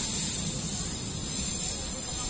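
Steady high-pitched drone of insects in the greenery, over a low rumble.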